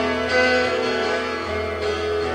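Live acoustic song with acoustic guitar playing sustained chords, which change about a second and a half in.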